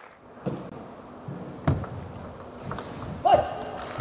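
A few scattered knocks and thuds in a large hall, the loudest about a second and a half in, followed near the end by a short shout.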